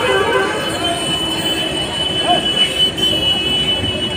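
Background noise around parked buses: a steady high-pitched whine and a lower hum over a noisy rumble, with faint voices in the distance.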